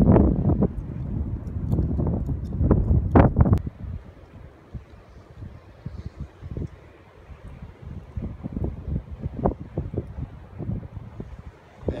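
Wind buffeting the microphone, heavy for the first four seconds or so, then easing to a softer rumble with a few short low thumps.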